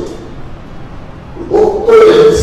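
A short pause in a man's animated speech, filled with faint room noise, then his voice starts again about one and a half seconds in.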